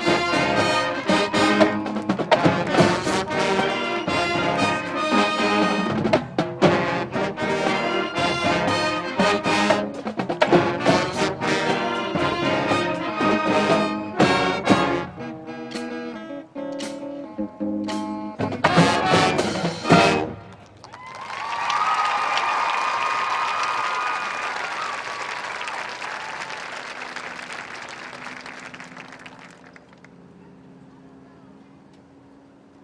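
Marching band brass and percussion playing a full, loud passage that ends with a final hit about twenty seconds in. Crowd applause and cheering follows and slowly fades.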